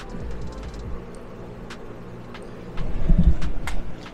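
Handling noise as a coiled wire antenna is lifted off a kitchen scale and moved: scattered light clicks and rustles, then a loud low rumble about three seconds in.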